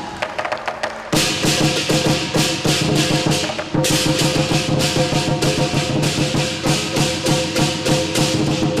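Lion dance percussion: a Chinese lion drum beaten with cymbals clashing and a gong ringing. Only sparse strikes for the first second, then the full ensemble comes in loud, with rapid repeated cymbal clashes.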